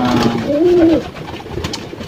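Racing pigeons cooing close by: one loud, low coo that rises and falls in pitch about half a second in, then quieter cooing.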